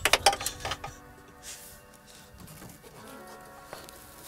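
A sharp click right at the start, then a few lighter clicks and knocks in the first second as a person climbs into a race car's cockpit, over quiet background music.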